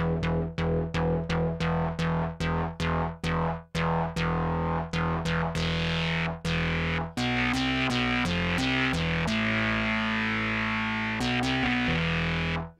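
Distorted synthesizer patch built from the FM-4's sine oscillators in an additive setup, played through a ladder low-pass filter driven by its envelope. It opens with a quick run of repeated short notes, about three a second, each with a bright attack that closes down. Longer, brighter notes follow, and from about seven seconds in there are held notes stepping between different pitches.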